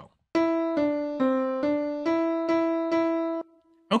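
MuseScore 4 playing back a simple piano melody at quarter note = 140: seven notes, about two a second, stepping down three notes and back up, then one note repeated, the last one held. It cuts off abruptly about three and a half seconds in.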